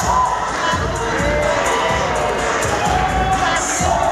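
Audience cheering and shouting over loud dance music, whose heavy bass beat comes in at the start.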